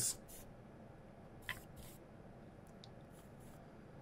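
Quiet room with a few faint, short scrapes and clicks, one slightly louder about one and a half seconds in: a soldering iron's cartridge tip being handled and wiped at a damp sponge and brass-wool tip cleaner while it heats up.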